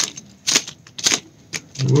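A few sharp, separate clicks and crackles from an incense packet being handled and worked open.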